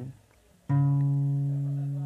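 Acoustic guitar with a capo sounding a B7 chord once, about two-thirds of a second in, all its notes starting together and then ringing on steadily as it slowly fades. Before it there is a brief near-silent gap.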